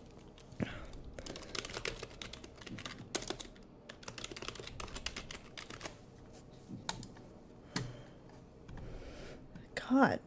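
Computer keyboard typing: a quick run of key clicks, then a few separate clicks.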